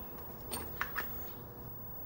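A few faint clicks as a plastic solar-panel roof mount base with a foam gasket is turned over in the hands, over low room tone.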